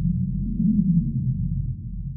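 A deep, low drone from the trailer's closing sound design. It swells slightly about halfway through, then begins to fade.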